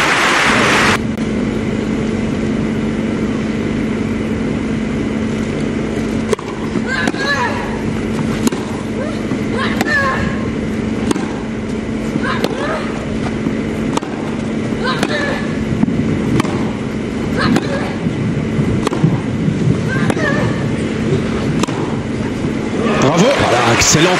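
Grass-court tennis rally: sharp racket-on-ball strikes, with one player's loud vocal grunt on her own shots, every two to three seconds. These are typical of Monica Seles's famous grunting. A steady low electrical hum runs underneath.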